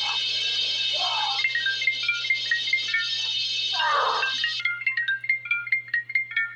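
Smartphone ringtone for an incoming call: a quick melody of short notes that steps up and down and repeats, starting about a second and a half in. It plays over a steady hiss that stops about two-thirds of the way through.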